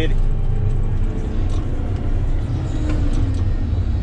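Komatsu GD655 motor grader's diesel engine running steadily with a low rumble, heard from inside the cab while the grader works the road.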